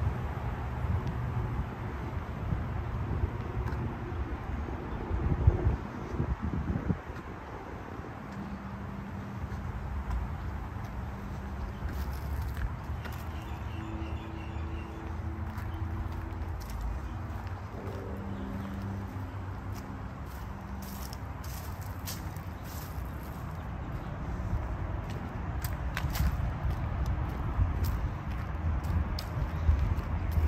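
Outdoor ambience on a handheld camera's microphone while walking: a low rumble of wind and handling noise, with a louder bump about five seconds in. Faint steady hums come and go through the middle, and a scatter of sharp high clicks runs through the second half.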